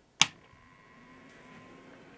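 A single sharp click as the rocker power switch on a Cherry Master 8-liner video slot cabinet is flipped on. It is followed by a faint hiss and a thin, steady tone that slowly grow in level as the machine powers up.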